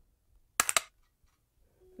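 An AR-15 dry-firing on a Mantis Blackbeard laser training system: a quick cluster of sharp mechanical clicks about half a second in, the trigger breaking and the system's automatic reset.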